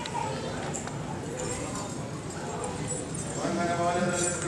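Men's voices chanting a liturgical hymn. The chant is faint and diffuse at first and grows fuller and more sustained about three seconds in.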